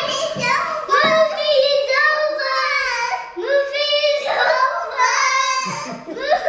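Young girls singing in high voices, with held and sliding notes and no clear words.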